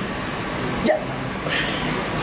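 One short spoken word, 'ya', about a second in, over steady background room noise.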